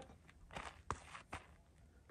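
Faint scuffs of feet shifting on dirt and a few light clicks as an AR-style rifle is raised to the shoulder, just before firing.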